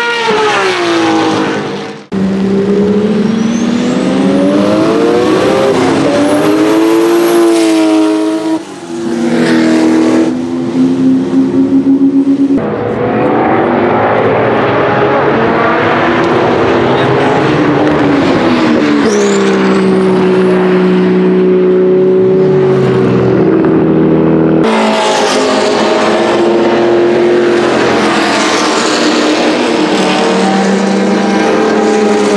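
Turbocharged 2.1-litre flat-six race engine of a 1974 Porsche 911 Carrera RSR Turbo, heard in several spliced trackside clips, with sudden jumps in sound at each cut. Its pitch rises and falls through the gears and holds a steady drone in the longer stretches. It is preceded briefly by another race car's engine.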